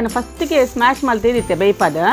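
Speech over soft background music.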